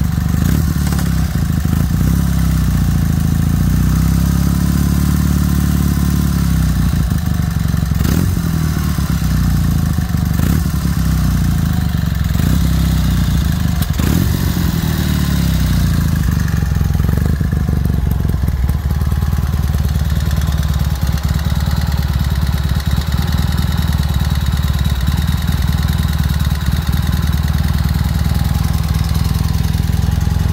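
Horex Imperator 400 air-cooled parallel-twin engine running at idle, its revs rising and falling a few seconds in and dropping back again about halfway through, then settling into a steady idle.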